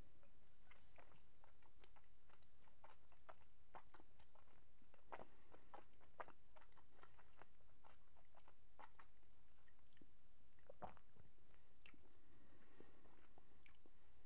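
Faint wet mouth sounds of a sip of whisky being held and worked around the mouth while tasting: many small lip smacks and tongue clicks scattered throughout, a few slightly louder around the middle.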